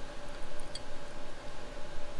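Workshop room tone with a steady hum, and a faint click of metal parts being handled as a simulated weight is fitted to a crankshaft, about three-quarters of a second in.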